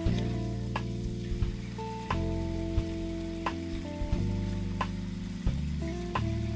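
Honey garlic sauce sizzling in a nonstick frying pan as a metal spoon bastes the chicken, with the spoon clicking against the pan now and then. Background music of held chords runs under it, changing about every two seconds.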